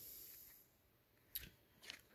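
Near silence: room tone, with one faint, short rustle about a second and a half in.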